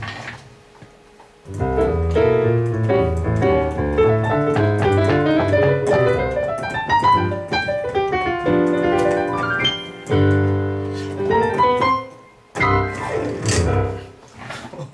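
Digital keyboard with a piano sound playing a jazz-style passage of notes and chords built around the G7 dominant seventh chord. It starts about a second and a half in, breaks briefly near ten seconds, and stops about two seconds before the end.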